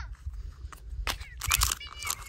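Hard plastic clicking and crackling as a clear plastic toy capsule is handled and worked open, densest and loudest in the second half, over a low steady rumble.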